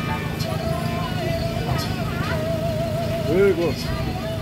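Roadside street ambience: a steady low rumble of road traffic under a wavering held melodic tone, with Thai voices around it, one voice loudest briefly near the end.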